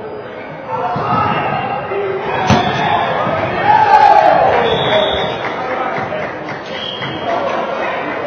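Volleyball players shouting and calling during a rally in a large gym hall, with a sharp smack of the ball being hit about two and a half seconds in. The voices are loudest about four seconds in.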